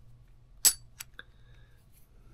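Silver bullion coins clinking together as they are handled: one sharp metallic clink with a brief high ring about two-thirds of a second in, then two lighter ticks.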